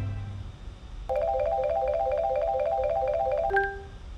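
Video slot game sound effects: a fast, evenly repeating run of rising four-note chimes for about two and a half seconds, cut off by a click and a short held tone as a win is paid.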